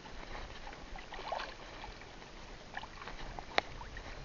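Sea water lapping and washing against a small fishing boat: a steady, even wash with faint scattered ticks, and one sharp click shortly before the end.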